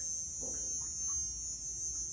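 Insects droning steadily at a high pitch, with a low rumble of outdoor background underneath.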